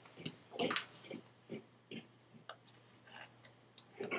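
Faint, irregular clicks and light knocks of small objects being handled while a laptop charger is fetched and plugged in.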